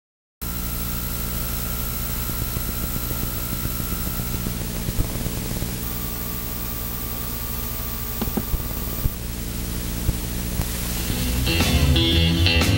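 Steady electrical hum and hiss with a faint high whine, broken by a few light clicks. Electric blues guitar music starts to come in about a second before the end.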